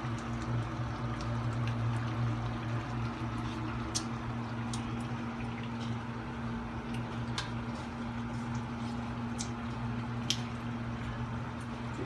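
Dinuguan, a pork-and-blood stew, bubbling in a steel wok over a raised flame as its sauce is reduced down. A metal spoon clicks lightly against the wok three times, over a steady low hum.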